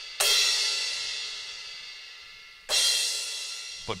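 Sampled crash cymbal from a KAT KT-200 electronic drum kit's cymbal pad, struck twice about two and a half seconds apart. Each crash rings out and slowly fades.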